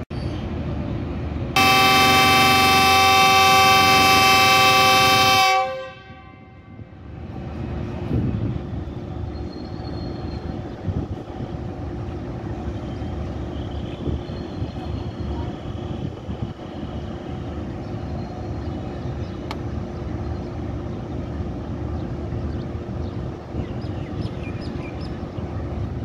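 Pakistan Railways diesel locomotive's air horn sounding one long blast of about four seconds, a chord of several steady tones that starts a second or two in and then cuts off. Afterwards the locomotive's engine runs steadily under the station's background noise.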